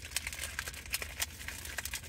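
Faint irregular crackling and rustling: a scatter of small, quick clicks over a low background hum.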